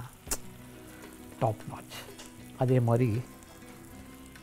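A man speaking in short phrases over a faint steady hiss, with a single sharp click just after the start.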